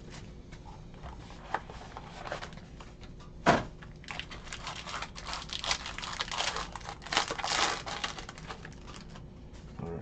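Plastic and foil wrapping on a box of trading cards crinkling and tearing as hands strip it open, in a run of irregular crackles that thickens after the first few seconds.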